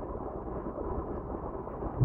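Steady low background rumble inside a car cabin, with no distinct events.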